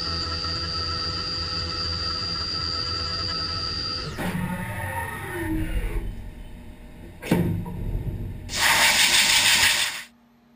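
Haas Super Mini Mill 2 CNC mill cutting aluminium, a steady whine over a low hum. About four seconds in the cutting stops and tones fall in pitch as the spindle winds down. A sharp clunk comes about seven seconds in, and a loud hissing rush fills the last second and a half.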